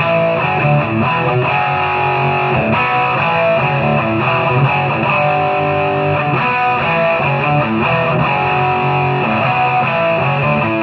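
Electric guitar riff played on a Gibson Les Paul Traditional through Marshall DSL40C amplifiers with a Boss SD-1 overdrive, giving a distorted tone. Notes and chords follow one another quickly at an even loudness.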